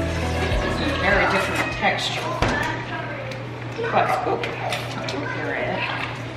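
Background music fading out in the first second, then low talk between people with a few sharp clicks and knocks, over a steady low hum.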